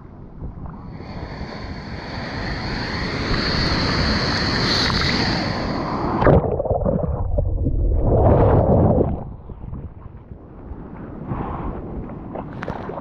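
Sea water rushing and splashing close around a GoPro in the surf. It builds over the first few seconds and cuts off suddenly about six seconds in. A second, shorter rush of water follows around eight to nine seconds.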